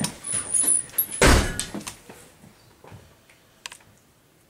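A heavy thump about a second in, with a few lighter knocks and shuffles around it, then it goes quiet.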